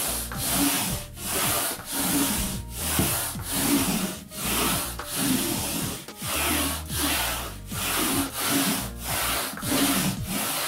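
A Quickle Mini Wiper's sheet-covered head rubbed back and forth over a textured wall and baseboard: an even run of swishing wiping strokes, a little over one a second.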